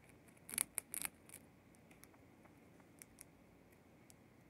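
A pet mouse gnawing a crunchy treat stick: a quick run of crisp little crunches about half a second to a second and a half in, then a few faint ticks.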